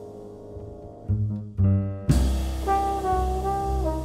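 Live jazz band of trombone, piano, Wurlitzer electric piano, double bass and drums. A held chord fades, two low trombone notes lead in, and about two seconds in the whole band comes in on a sharp drum hit, the trombone carrying a melody over bass and drums.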